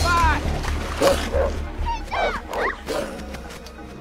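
Film soundtrack of wolves snarling and yelping in a fight, short rising-and-falling cries near the start and again in the middle, over background music. The cries thin out near the end.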